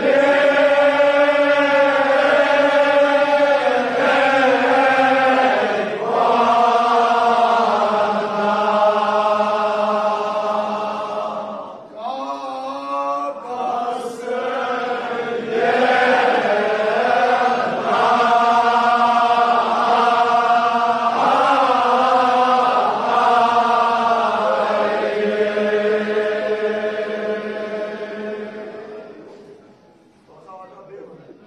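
Kashmiri marsiya chanted by men's voices in unison, unaccompanied, in long held, slowly wavering notes. The chant breaks off briefly about twelve seconds in, then resumes and fades out near the end.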